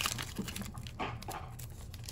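Foil wrapper of a Pokémon card booster pack crinkling in the hands as it is torn open, loudest at the very start and then a few faint crackles.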